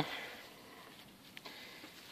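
Faint handling sounds of a hand picking through grass and soil, with two soft ticks about one and a half seconds in.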